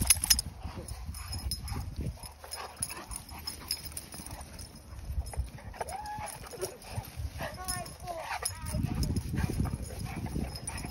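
Two Cane Corsos play-wrestling on grass: paws scuffling and thudding, with a few short dog vocal sounds midway. The scuffling gets louder near the end.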